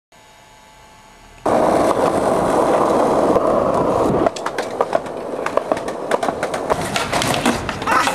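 Skateboard wheels rolling on concrete sidewalk, starting suddenly a little over a second in after a faint hum. In the second half the rolling comes with many sharp clacks and knocks of the board.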